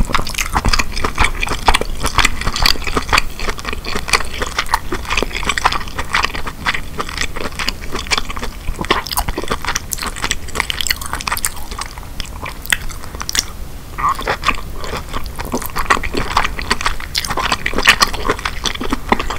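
Close-miked chewing of king crab meat coated in alfredo sauce: dense, irregular wet smacks and clicks of the mouth as the meat is chewed.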